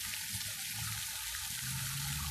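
Fountain water jets splashing steadily into a stone basin, an even hiss without breaks.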